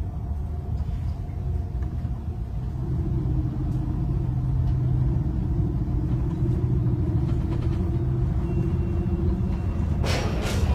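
Running noise heard inside a moving tram: a steady low rumble and hum that grows a little louder about three seconds in as it gathers speed.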